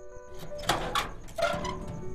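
A door being handled: several sharp knocks and a rattling scrape, with the loudest hits near the middle, over background music of held synth tones.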